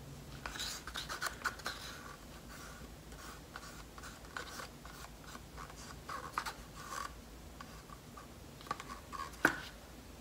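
Wooden stir stick scraping and tapping against a small cup of acrylic paint, in a run of short scratchy strokes, then a few light knocks and one sharp click near the end.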